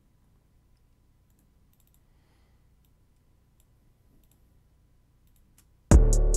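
Faint, scattered mouse clicks over near silence, then a trap beat with heavy bass kicks starts playing abruptly at the very end.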